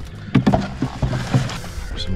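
A boat's motor humming steadily, with a few short, sudden sounds over it.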